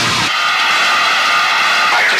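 The heavy guitar music cuts out about a quarter second in. A loud, steady, high squealing tone of several pitches held together takes its place for about a second and a half, with no low end under it.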